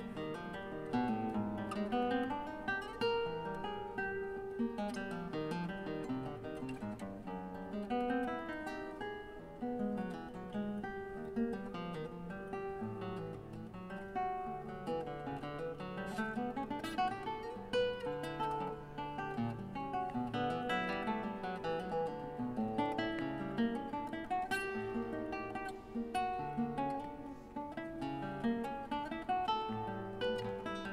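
Solo nylon-string classical guitar played fingerstyle: a steady stream of quick plucked notes with runs up and down the neck and some chords, ringing on in the reverberant space of a large church.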